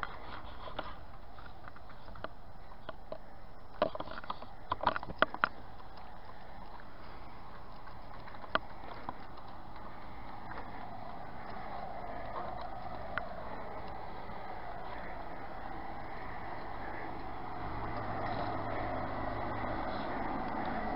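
Low steady outdoor background noise with a few short clicks and knocks from a hand-held phone being moved around, and a faint low hum that grows slightly louder near the end.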